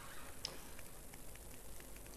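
Quiet lecture-hall room tone with a few faint ticks, the clearest about half a second in.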